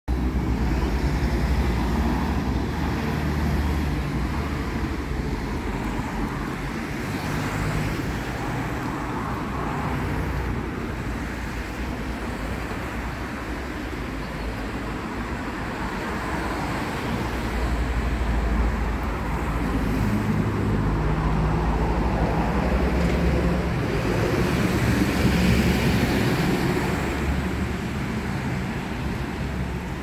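Road traffic on a town street: cars and a truck driving past, the engine and tyre noise swelling and fading as each vehicle goes by.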